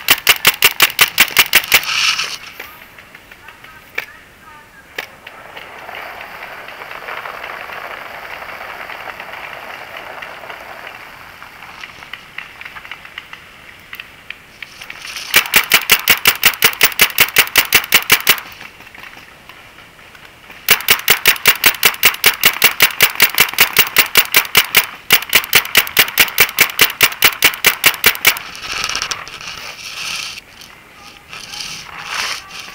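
Paintball marker firing long rapid strings of shots close to the microphone: three volleys, a short one at the start, another at about fifteen seconds and a longer one from about twenty-one to twenty-eight seconds, with quieter stretches between.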